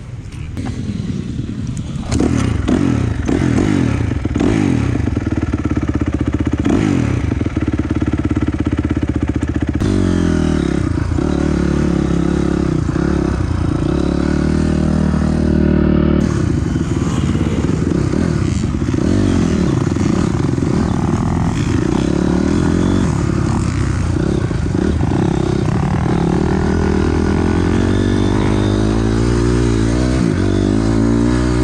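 Honda CRF250R dirt bike's single-cylinder four-stroke engine ridden hard on a motocross track. It comes in loud about two seconds in, then its pitch rises and falls over and over as the throttle is opened and closed and the gears change.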